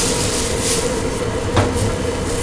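Water at a rolling boil in a stainless steel pot over a gas burner, a steady rumbling hiss that swells and eases, with a noodle strainer basket dipped in it, over a steady hum. One sharp knock comes near the end.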